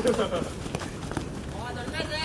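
Futsal players running on artificial turf, with short footfalls and ball touches as one player dribbles the ball. Laughter right at the start and a shouted call near the end.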